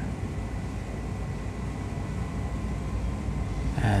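Steady low background rumble with a faint, thin high tone running through it.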